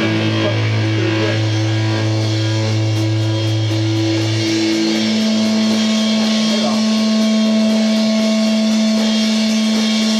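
Live rock band playing loudly, with electric guitar holding long droning notes; about halfway through, the held low note gives way to a higher sustained one, over drums and cymbals.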